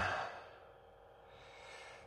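A man's short, breathy sigh at the start that fades out within about half a second, followed by quiet with only a faint breath near the end.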